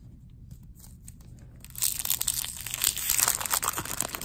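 A 1993 Bowman baseball card pack's wrapper being torn open and crinkled by hand, starting a little before halfway through.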